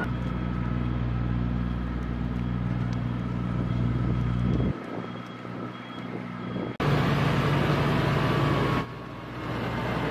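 Engine of a large forklift running steadily while towing an M777 howitzer. The engine sound drops away abruptly about five seconds in, comes back suddenly just before seven seconds, and dips briefly again near nine seconds.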